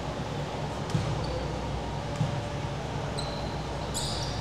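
A basketball bounced a few times on a hardwood court by a player at the free-throw line before the shot, faint knocks about a second apart over the steady hum of a large gym.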